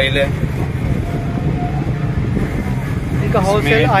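Steady low rumble of street traffic and busy outdoor market noise, with a man's voice starting up again near the end.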